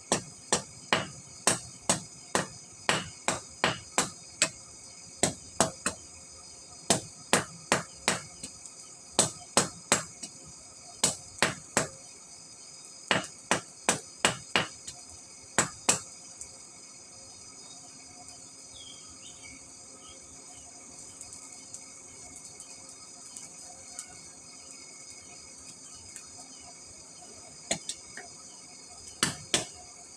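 Hand hammer striking a red-hot steel bar on a small round anvil, flattening a chisel blank: runs of sharp metallic blows about two a second through the first half, a long pause, then a few more blows near the end, all over a steady high-pitched drone.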